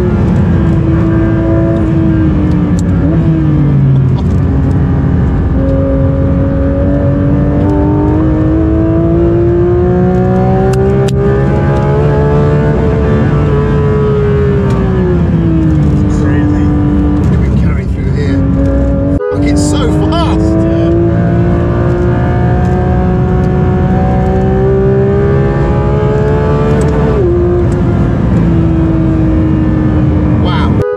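In-cabin sound of a 992 Porsche 911 GT3 RS's 4.0-litre naturally aspirated flat-six at full throttle on track. The engine note climbs steadily through the revs for several seconds, then drops away as the driver lifts off, and climbs again on a second long pull. There is a brief sharp break in the sound partway through and a step down in pitch from a gearshift near the end.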